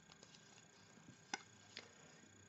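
Near silence with a faint sharp click a little past the middle and a fainter one near the end: very large knitting needles tapping together as stitches are knitted.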